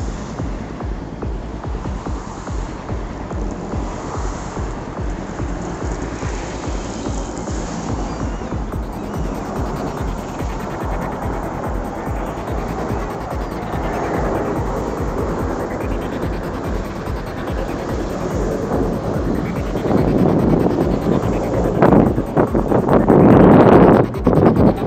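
Rumble of military jet aircraft flying over in formation, a large jet with two fighters, growing steadily louder and loudest near the end as they pass, with wind buffeting the microphone.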